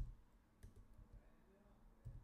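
Faint computer keyboard keystrokes: a sharp click at the very start and a couple of softer ones about half a second later.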